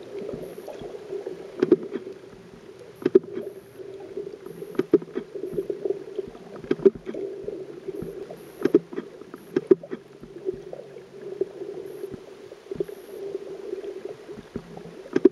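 Muffled underwater sound: a steady low hum with irregular sharp clicks and knocks scattered through it.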